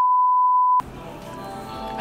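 Electronic test-tone beep: one steady, high-pitched tone lasting under a second that cuts off abruptly, the tone that goes with TV colour bars. Faint background music follows.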